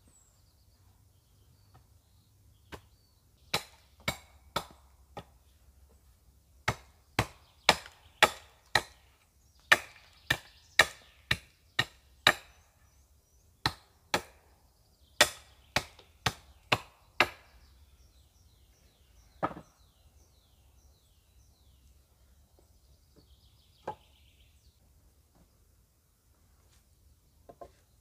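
Sharp blows of a hand tool on wood, in quick runs of two to five strikes about half a second apart, some two dozen in all over about fifteen seconds, then three single knocks spaced further apart. Faint bird chirps in the background.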